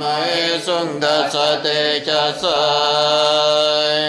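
A single voice chanting a mantra in a slow, melodic line, holding long notes and sliding between pitches, over a steady low tone.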